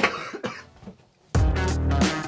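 A person coughs once, a short harsh burst at the very start. About a second and a half in, loud music with a heavy bass cuts in abruptly.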